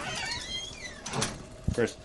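A door creaking shut: a falling, high-pitched hinge squeak in the first second, then a short thump near the end as it closes.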